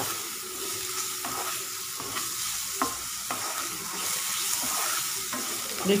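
Grated carrot and onion sizzling in hot oil in a kadai while a wooden spatula stirs them, scraping against the pan a few times.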